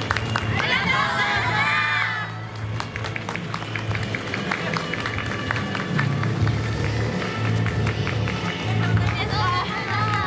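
Yosakoi dance music playing over a loudspeaker, with many sharp clicks. Voices of the dance team and crowd shout and cheer over it, loudest about a second in and again near the end.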